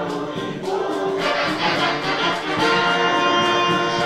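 Afrobeat band playing live, with voices singing over it and long held notes through the second half.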